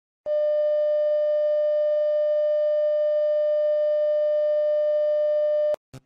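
A test tone of the kind played with TV colour bars: one steady mid-pitched electronic tone held for about five and a half seconds, cutting off suddenly near the end.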